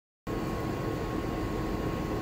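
Steady hum and fan noise of running laboratory instruments, with a thin steady whine; it cuts in abruptly from dead silence about a quarter second in.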